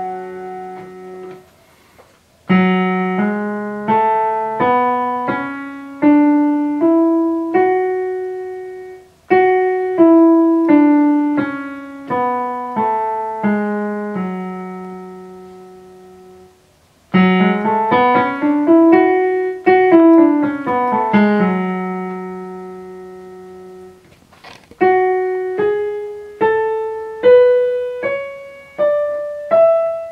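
Electronic keyboard in a piano voice playing the F# natural minor scale (F#, G#, A, B, C#, D, E, F#) one note at a time. It goes slowly up and back down, then runs up and down more quickly, and starts up again near the end.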